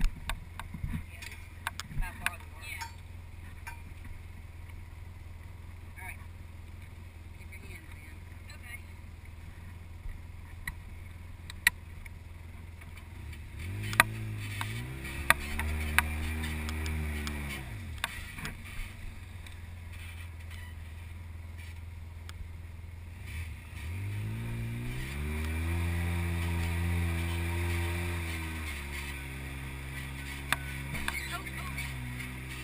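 Side-by-side UTV engine running at a low, steady speed, then revved up twice for several seconds each, about halfway through and again near the end, before dropping back. Scattered sharp knocks are heard throughout, most of them in the first few seconds.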